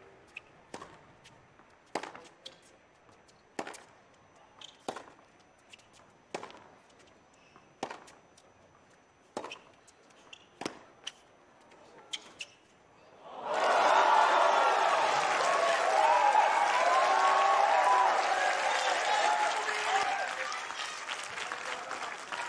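Tennis rally on a hard court: sharp pops of the ball off the racket strings and its bounces, about one every second or so. Partway through, the point ends and the crowd bursts into cheering and applause, easing off near the end.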